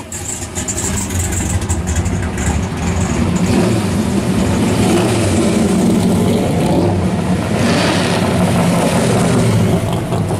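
Modified V8 muscle cars driving slowly past one after another, their exhausts rumbling steadily and rising and falling with light throttle. A louder, brief rush comes around eight seconds in.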